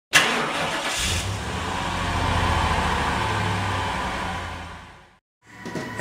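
A car engine starts with a sudden loud burst, then runs steadily with a low, even pulse before fading out near the end.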